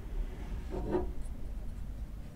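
A short rubbing scrape, then a faint click or two, as the lens assembly is picked up and handled by hand. A low steady background hum runs under it.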